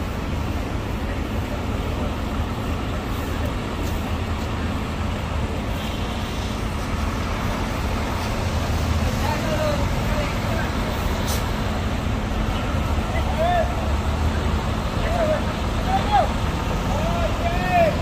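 Steady low rumble of diesel bus engines at low revs as a Hino AK8 coach rolls slowly into the terminal, a little louder in the second half, with voices in the background.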